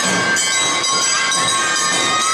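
Awa Odori festival music: bamboo flutes hold long steady high notes over the band's accompaniment.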